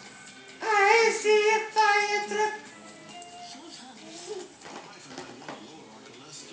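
A small child's high-pitched voice, loud and close, holding a few sung notes with bending pitch for about two seconds, starting suddenly just after the start and stopping before the halfway point. Faint television speech and music run underneath.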